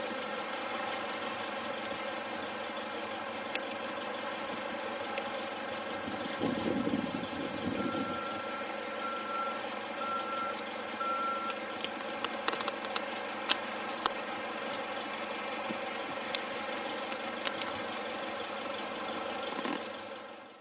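A steady mechanical drone, like an engine running, with four short high beeps about a second apart near the middle and scattered sharp clicks.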